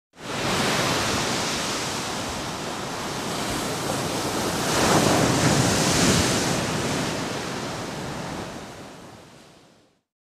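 A rushing, surf-like noise effect with no pitch or beat, swelling to its loudest about halfway through and then fading out to silence.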